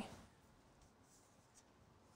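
Near silence: room tone, with two very faint soft scuffs about a second in and again a little later.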